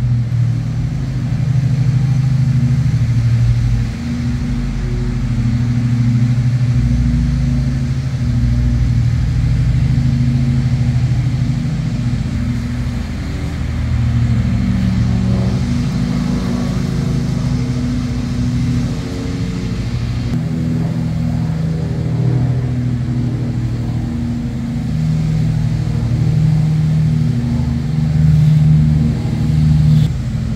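A steady low engine hum whose pitch drifts a little.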